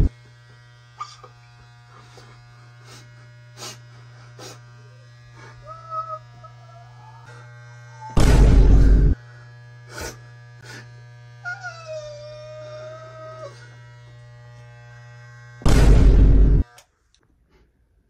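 Electric hair clippers buzzing steadily as a head is shaved. The buzz is broken by loud rushes of noise about a second long, near the middle and again near the end, and it cuts off suddenly shortly before the end.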